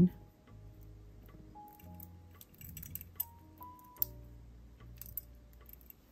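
Soft background music with long held notes. A few faint, sharp clicks of glass beads and metal jewelry pliers come through as beads are slid onto a jump ring, the sharpest about four seconds in.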